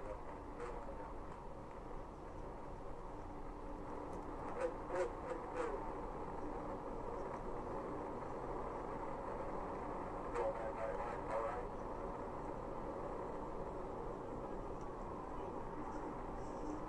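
Steady road and engine noise from inside a patrol car at highway speed during a pursuit, heard through the dashcam audio. Brief snatches of muffled speech come through about five seconds in and again about ten seconds in.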